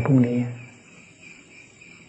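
A faint, steady, high-pitched chorus of insects chirping in the background, heard through a pause after a man's single spoken word at the start.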